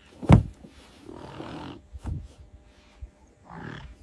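Low, rough grunting calls of large flightless birds, with a sudden heavy thump about a third of a second in and a smaller one about two seconds in.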